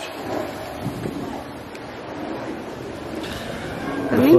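Steady outdoor background noise with wind rumbling on the microphone.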